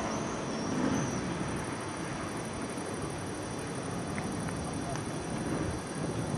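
Steady outdoor background hiss of a camcorder's microphone under a gathering storm, with no strong wind blowing yet. A few faint high chirps come in the first second.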